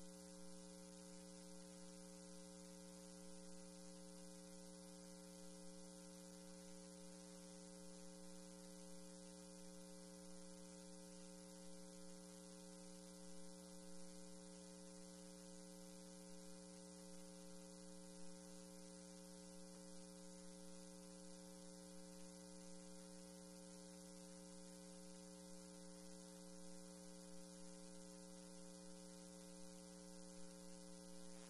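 Near silence: a steady electrical mains hum with several overtones and a faint hiss from the recording feed.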